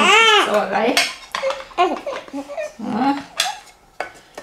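A baby's short cry rising and falling in pitch at the start, then light clicks and clatter of plastic ink-pad cases being opened and handled.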